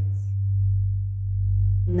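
A steady low electronic tone, a pure hum that gently swells and fades in loudness, runs under the hypnosis voice track. A woman's voice comes back in near the end.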